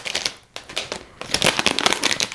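Clear plastic cellophane wrap crinkling and crackling as it is peeled off a perfume box, in irregular crackles with a short lull about half a second in.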